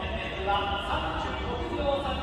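A voice and music carried over the racecourse loudspeakers, with a low steady rumble underneath.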